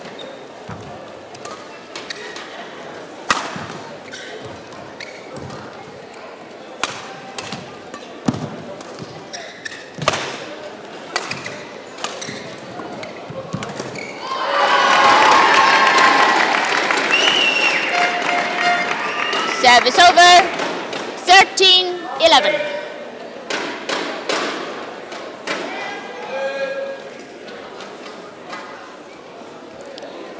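Badminton rally: sharp racket strikes on the shuttlecock and players' footwork on the court floor, a hit every second or so. About halfway through, the point ends and the crowd in the hall cheers and claps for several seconds, with shouts on top, before it dies down.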